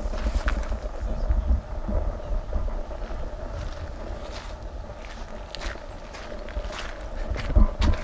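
Wind rumbling on the microphone, with a faint steady hum and occasional footsteps on the stony foreshore.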